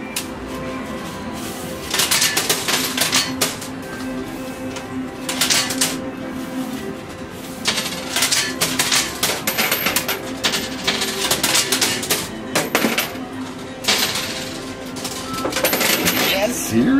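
Coins clattering in a coin pusher machine: dropped coins land on the metal playfield and on the heaped coins in bursts of rapid metallic clicks, five or so clusters a couple of seconds apart.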